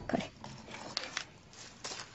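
A woman says one short word, then laughs quietly and breathily, with a few light clicks from something handled about a second in and near the end.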